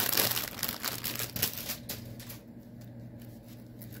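Thin clear plastic bag crinkling and rustling as a bundle of embroidery floss is pulled out of it. The crackle is busiest in the first couple of seconds, then thins to a few soft rustles.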